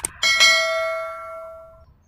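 Subscribe-button animation sound effect: a click, then a bell struck once about a quarter second later, ringing out and fading away over about a second and a half.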